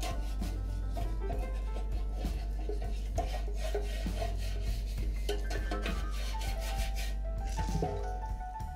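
A silicone pastry brush rubbing oil over the inside of a metal loaf tin, heard over background music with a steady beat.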